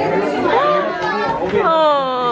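Many young children's voices chattering and calling out at once. Near the end one high voice starts a long call that falls slowly in pitch.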